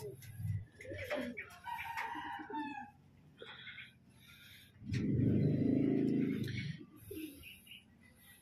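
A rooster crows about two seconds in. About five seconds in there is a louder, low-pitched sound lasting nearly two seconds.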